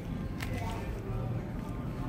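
Restaurant room noise: a low steady hum with faint voices in the background, and one sharp tap about half a second in.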